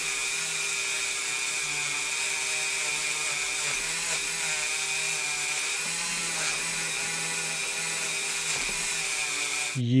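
Handheld rotary tool running steadily with a high whine, its wire-brush bit scrubbing the metal base of a diecast toy car.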